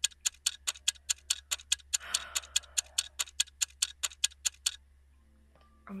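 Clock-ticking sound effect: a fast, even run of sharp ticks, about five a second, that stops about a second before the end.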